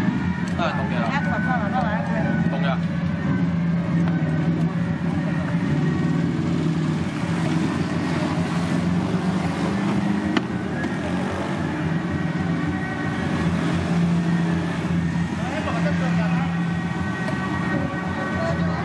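A motor vehicle's engine running with a steady low hum that swells and fades, under the voices of people in the street. A single sharp click about ten seconds in.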